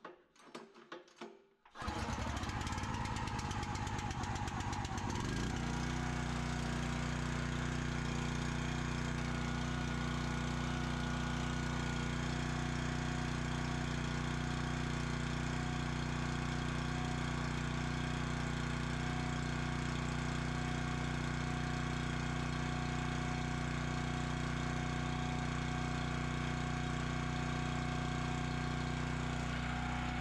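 Log splitter's small single-cylinder gasoline engine, recoil pull-started, catching about two seconds in. It runs unevenly for a few seconds, then settles into a steady run.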